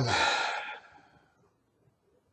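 A man's audible sigh: a breathy exhale that follows on from a spoken 'um' and fades out within about a second.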